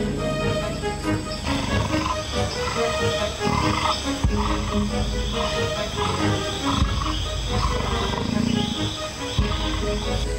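A jaguar growling low, again and again, with background film music.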